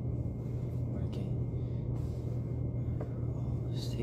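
A steady low hum, with a few faint soft clicks.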